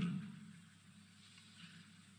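A pause in a man's speech: his last word dies away in the first half second, leaving near silence with faint steady hiss.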